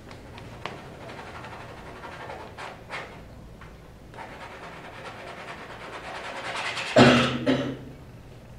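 Palette knife scraping and hatching paint on canvas, a soft scratchy rasp with a few light taps, swelling over the middle seconds. A short burst of a man's voice cuts in about seven seconds in.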